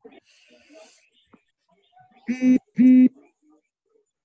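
Background sound leaking through a participant's open microphone on a video call. Faint scattered noise comes first, then two short, loud, steady-pitched sounds about half a second apart.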